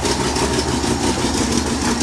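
The 1977 Chevy pickup's carbureted engine idling steadily. It has an exhaust leak near the headers that the owner has not yet fixed.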